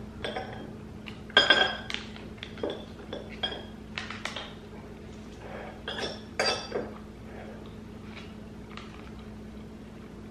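Metal table knife clinking and scraping against a ceramic plate as it cuts through a thick caramel: a run of sharp clinks with a short ring, the loudest about a second and a half in, more around six to seven seconds, then only faint sounds.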